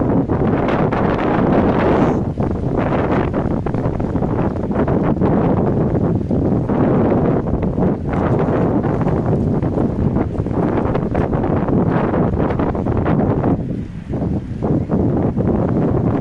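Wind buffeting the microphone: a loud, uneven rush that swells and eases, dropping briefly near the end.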